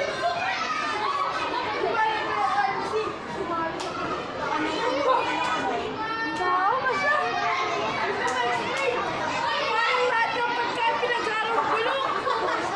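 Many schoolchildren's voices chattering and calling out at once, with one voice rising loudly about six seconds in and a few sharp clicks scattered through.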